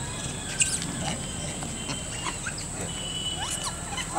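Rhesus macaques giving a few brief high squeaks and chirps, scattered and spaced apart over a quiet background.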